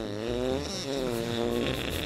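A drawn-out, buzzy fart noise that wobbles up and down in pitch and breaks off near the end, over a low music beat.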